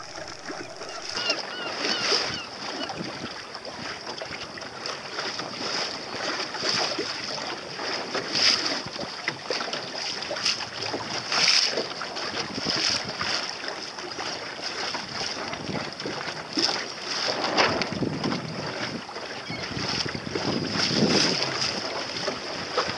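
Water splashing and slapping against a small boat's hull as it moves across choppy sea, with wind buffeting the microphone. Now and then a louder splash stands out.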